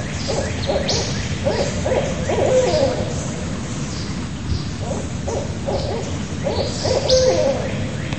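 Barred owl hooting in several runs of short hoots, two of them ending in a longer drawn-out note.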